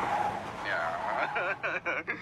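Police car speeding away with a rush of tyre and road noise as it spins up dust. A voice comes in over it about halfway through.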